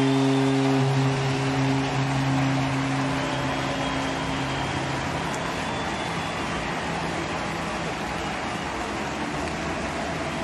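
Ballpark crowd cheering a home run, the roar slowly dying down. A steady low tone sounds over the crowd for the first four seconds or so, then fades.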